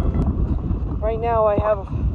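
Wind buffeting the microphone, a steady low rumble throughout, with a woman's voice sounding briefly about a second in.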